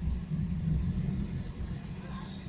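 Low, steady rumble of a motor vehicle engine running.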